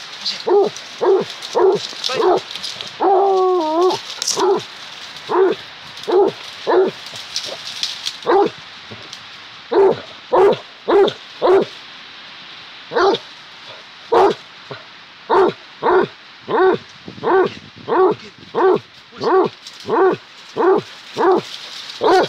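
Basset hound barking repeatedly, with about thirty short barks and one longer wavering bay about three seconds in. From the middle on the barks come in a steady run of about two a second.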